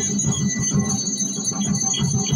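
Traditional Himachali folk music played on drums, with jingling bells.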